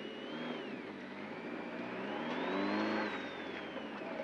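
Nissan 240SX rally car's engine heard from inside the cabin, running at low load as the car moves off. Its pitch dips, rises gradually to a peak about three seconds in, then eases off.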